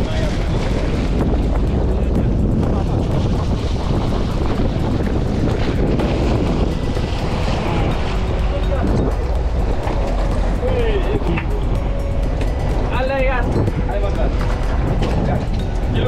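Steady rumble of a fishing boat's engine and sea, with wind buffeting the microphone and water splashing at the hull as a gaffed yellowfin tuna is hauled aboard; a few brief shouted calls in the second half.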